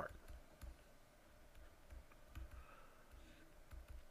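Faint, scattered clicks and light taps of a pen stylus on a tablet surface while a word is handwritten, over near-silent room tone.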